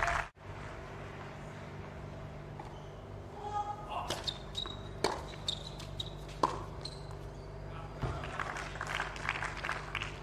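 A short tennis rally on a hard court: a serve and a few racquet strikes on the ball, about a second apart, with brief high squeaks of shoes on the court between them. Crowd noise rises near the end as the point is won.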